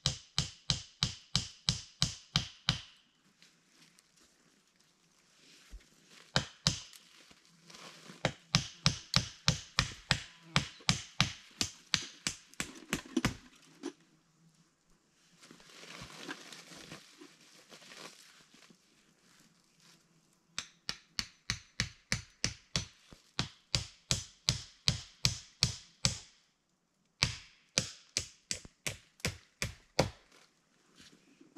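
Rapid, evenly spaced sharp knocks, about four a second, in runs of several seconds separated by pauses.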